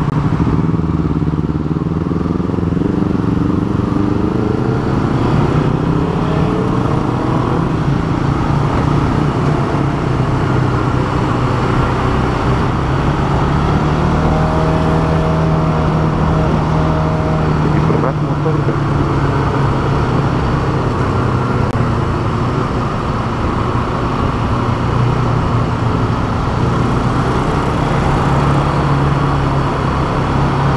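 Motorcycle engine running under way in traffic, its note rising as it picks up speed over the first several seconds, then holding steady, with wind and road noise.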